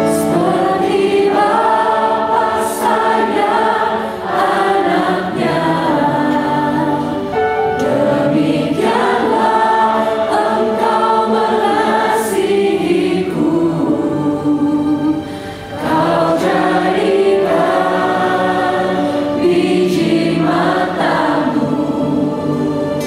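Many voices singing an Indonesian-language worship song together, led by a worship leader and two singers on microphones, over piano and keyboard accompaniment. The singing runs in phrases with short breaths between them.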